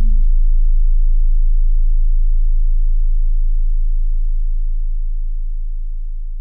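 A single deep bass note left ringing as the music cuts off, a steady low hum that slowly fades.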